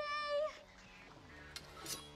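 A short, high-pitched squeal from a voice, held on one pitch for about half a second, followed by soft music that comes in about a second later.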